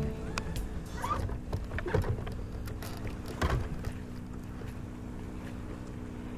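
Steady low hum of a bow-mounted electric trolling motor on a bass boat, with a few short knocks about one, two and three and a half seconds in.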